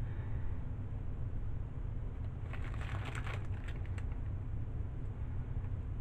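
Faint crinkling and rustling of a plastic piping bag squeezed in gloved hands while piping soap batter, in a short cluster about halfway through, over a steady low hum.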